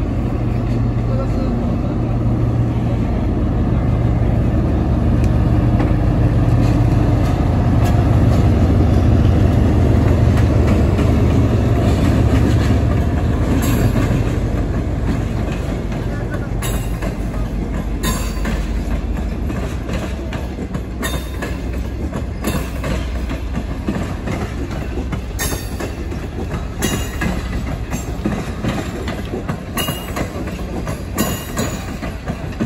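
A diesel locomotive passes, its engine's low drone loudest in the first half and fading. From about midway, the wheels of the passenger coaches it hauls click sharply over the rail joints every second or two.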